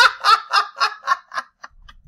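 A man laughing: a run of short laughs, about four a second, growing weaker and dying out about a second and a half in.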